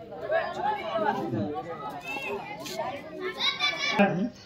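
Chatter of a group of people talking at once, many voices overlapping with no one speaker standing clear, and one higher voice coming forward near the end.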